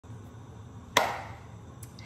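One sharp knock about a second in, fading over about half a second, with a faint click near the end, over low room tone.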